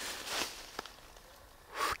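A man's breathing between phrases: a soft breath out, a faint click about a second in, and a quick intake of breath near the end.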